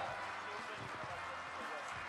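Faint steady room noise of a large hall during a pause in the speaking, with no clear voices or distinct sounds.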